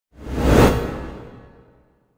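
Intro logo sound effect: a cinematic whoosh with a deep rumble, swelling to a peak about half a second in and then fading away over the next second.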